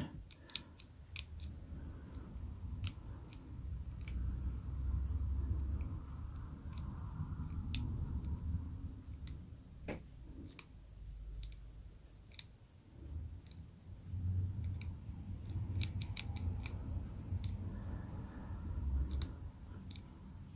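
Small Master Lock combination padlock worked by hand, its dial turned back and forth while the shackle is tugged, giving scattered light clicks over the low rustle of fingers handling the lock. It is the sound of testing the dial's gates under shackle tension to find the one with the most play, which gives the combination's third number.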